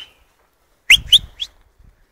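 A person whistling to call a lost dog: three quick, sharp rising whistles about a quarter second apart, the first two loudest.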